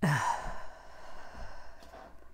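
A woman's long, exasperated sigh. It starts as a voiced groan falling in pitch and trails off into a breathy exhale over about a second and a half, a sign of frustration at yet another fumbled take.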